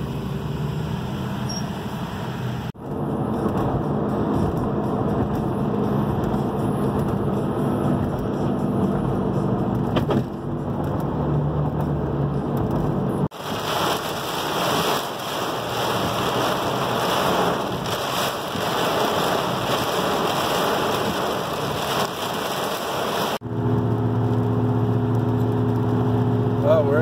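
Inside a 2006 Mustang's cabin: engine and road noise with a low steady hum in slow traffic, cut after about thirteen seconds to heavy rain beating on the windshield and roof for about ten seconds, then highway cruising with a steady engine hum near the end.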